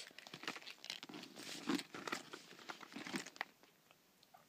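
Rustling and light clicks of handling as a Louis Vuitton coated-canvas Zippy wallet is pulled out of a handbag and turned over in the hand. The sound fades out near the end.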